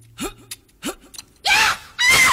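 Short breathy vocal gasps on a film-soundtrack recording, two of them about two-thirds of a second apart, then a loud vocal cry about one and a half seconds in.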